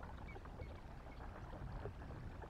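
Outdoor river-marsh ambience: a steady low rumble with water lapping, and a few faint short high chirps in the first second.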